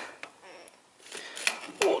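Lever-action grease gun being pumped into a truck front wheel hub bearing through a grease fitting adapter: a few scattered metallic clicks and clacks from the lever and fitting, with a quieter gap between them.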